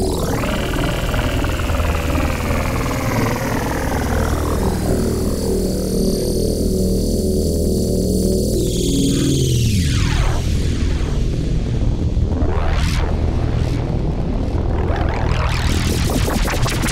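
Novation Summit synthesizer playing a sustained low drone with layered tones while its filter is swept by hand. The sound sweeps down about ten seconds in, rises in sweeps after that, and turns to a fast pulsing near the end.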